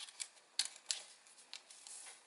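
A sheet of origami paper being folded and pressed by fingers: a few faint, sharp paper clicks and crinkles at irregular moments.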